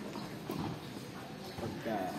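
Tennis balls struck by racquets and bouncing on a hard court: a few sharp hollow knocks, with voices in the background.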